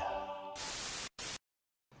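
The tail of an electronic intro jingle dies away, then two sharply cut bursts of TV-style static hiss, a longer one about half a second in and a brief one just after, followed by dead silence.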